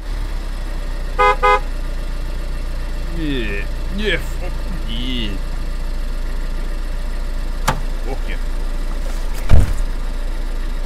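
A car horn honks twice in short toots about a second in, over a steady low hum of a car engine idling. A few drawn-out vocal calls follow, and a heavy thump near the end is the loudest sound.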